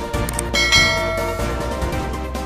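Background music with a bright bell chime struck about half a second in, ringing for nearly a second before fading: a subscribe-and-notification-bell sound effect.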